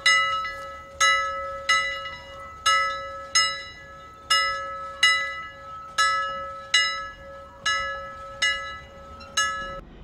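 A bell sound effect struck over and over, about once a second, each strike ringing out and fading, over one steady held tone; both stop just before the end.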